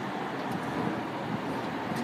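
Power liftgate of a 2014 Ford Escape opening under its motor, a steady whir.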